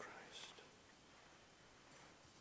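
Near silence: room tone, with a faint breathy hiss about half a second in.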